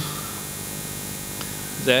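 Steady electrical mains hum and hiss from a church sound system. A man's voice says one word near the end.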